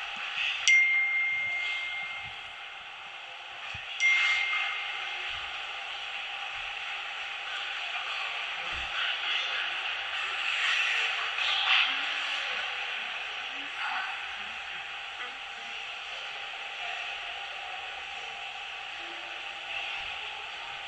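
Two brief, high, bell-like pings about three seconds apart, each ringing on for a second or so, over the steady background noise of a large hall.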